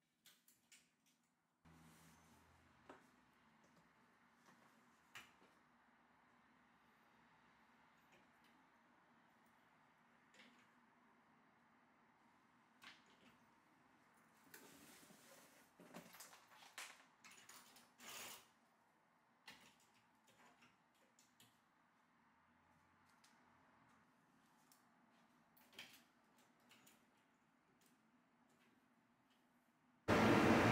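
Near silence broken by faint scattered clicks and light clatter of clothes hangers knocking on a closet rod as garments are hung up, with a small cluster of clicks about halfway through.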